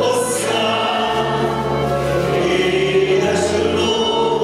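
Male and female singers performing a Hungarian magyar nóta duet, accompanied live by a Roma band with cimbalom and clarinet.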